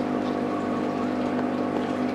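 Aquarium aeration running: a steady hum from the air pump with the bubbling of air rising from the air line through the water.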